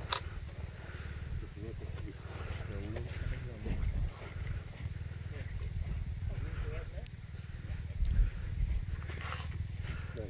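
Faint voices talking at a distance, over a steady low rumble, with one sharp click right at the start.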